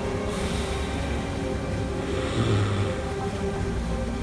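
Background music with a sustained drone, under a breathy rush of air through a pinniped's nostrils a moment in, then a softer second breath about halfway through.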